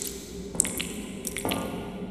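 Liquid dripping: a few sharp, separate drips over a low, steady music bed.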